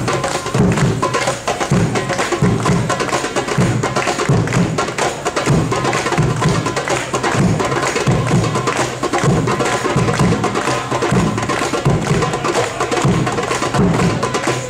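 Live hand-drum ensemble playing a steady, fast Middle Eastern dance rhythm on goblet drums. Deep bass strokes fall about every two-thirds of a second under quick, sharp higher strokes.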